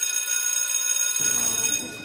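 An electric bell rings steadily as one unbroken ring and stops just before the end.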